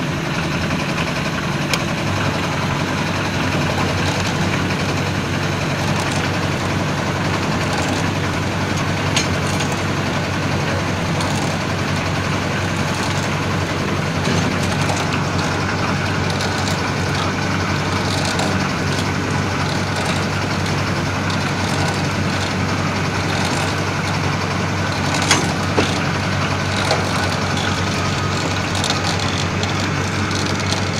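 Steady running of site machinery, a concrete mixer with its engine and a cable material hoist, as the hoist lifts a trolley of gravel. A couple of short knocks come about 25 s in.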